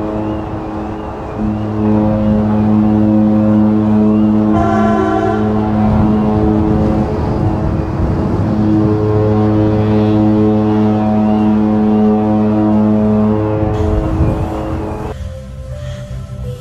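The AIDAsol cruise ship's deep horn sounding long drawn-out blasts on departure, stopping about two seconds before the end, with music playing along.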